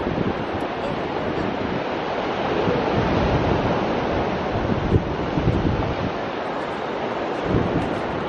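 Wind rumbling on the microphone over the steady wash of ocean surf breaking on the beach.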